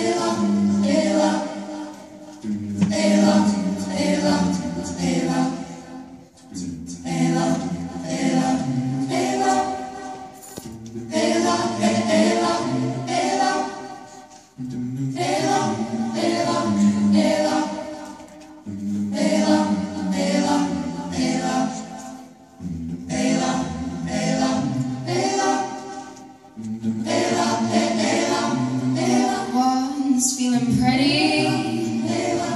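A high school vocal ensemble singing a cappella, in phrases of about four seconds with short breaks between them.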